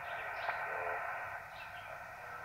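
Amateur HF radio receiver playing the 20-meter band through its speaker: steady, narrow static hiss with a faint, wavering station voice under it. The signal is weak, a little bit quiet, while the band is fading.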